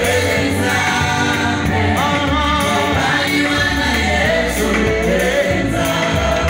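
A man singing gospel into a handheld microphone over instrumental accompaniment with a bass line.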